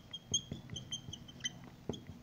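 Dry-erase marker squeaking on a whiteboard while writing: a string of short, high-pitched squeaks with a few faint taps of the tip.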